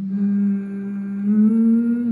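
A voice humming a sustained low note that steps up in pitch about a second and a half in.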